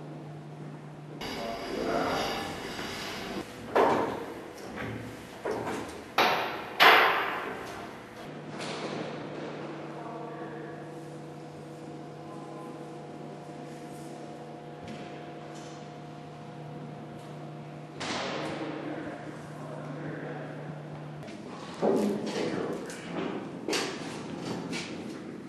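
Heavy metal equipment being handled in a large, echoing hall: a series of sharp metallic knocks and clanks, clustered about four to seven seconds in and again near the end. Under them runs a steady low hum that drops out for a few seconds early on and again near the end.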